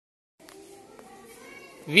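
Faint chatter of a crowd of children, with a man's voice starting loudly near the end.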